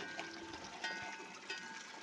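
Water trickling faintly into a bathtub cattle trough, with a few faint, thin high tones in the middle.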